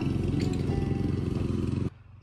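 A lawn mower running steadily, cut off suddenly near the end.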